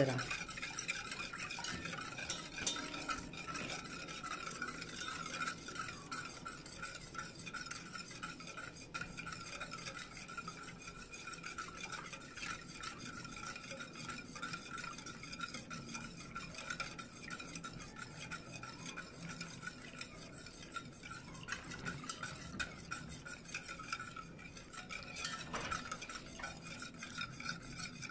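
A wire whisk stirring a thin milk and starch mixture in a stainless steel pot over the heat: a continuous light scraping and swishing against the metal, with a steady faint whine behind it. The mixture is kept moving so it does not stick as it heats.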